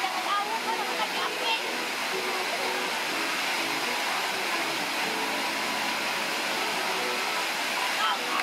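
Steady rushing of a waterfall, with a song and women's voices heard faintly through it.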